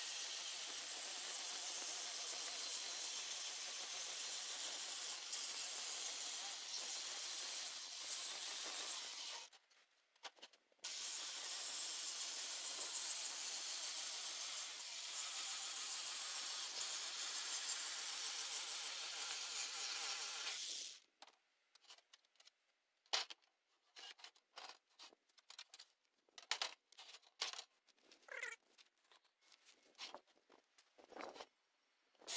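Bosch jigsaw with a metal-cutting blade running and cutting through a painted sheet-steel shelf. It runs steadily for about nine seconds, stops briefly, then cuts again for about ten seconds before stopping. The last third is scattered knocks and taps from the metal panel being handled.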